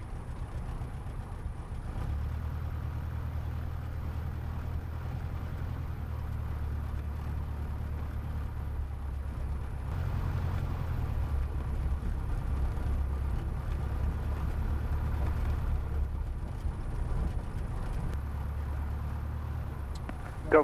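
Jodel DR1050 light aircraft's piston engine running steadily at low power, a low drone heard from inside the cockpit, rising slightly in level about halfway through.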